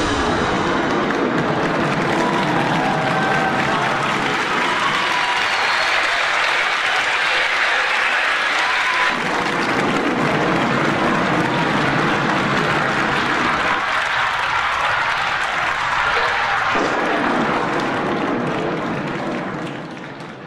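Theatre audience applauding steadily, fading out near the end.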